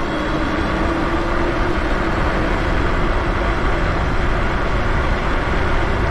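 Wind rushing over the microphone of an electric moped-style e-bike accelerating at full throttle, with a faint electric motor whine that rises slightly in pitch over the first few seconds.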